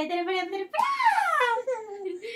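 Playful voices: a woman's voice held on one note for about half a second, then a high squealing voice that slides steadily down in pitch over about a second.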